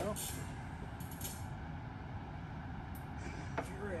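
A few short rustles and light clicks as a new mass airflow sensor is handled and fitted to the intake, over a steady low rumble of background noise.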